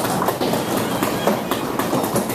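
Audience applause: many hands clapping, dense and irregular.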